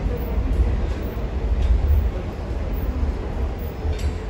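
Low, steady rumble of an underground metro station concourse.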